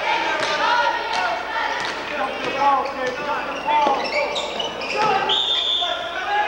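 Basketball dribbled and bouncing on a hardwood gym floor during play, with players' and spectators' shouts echoing in the hall. A short, steady, high referee's whistle sounds near the end.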